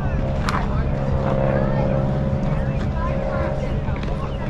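A steady, even mechanical hum like an idling engine runs under faint distant voices of players and spectators calling out, with a single sharp snap about half a second in.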